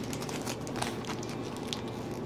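Foil wrapper of a Pokémon card booster pack crinkling as hands handle the opened pack and its cards: a scatter of small crackles.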